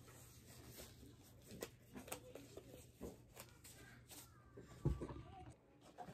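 Faint rustling and small snaps of blue nitrile gloves being pulled on and adjusted. About five seconds in comes a single thump, a box being set down on the table.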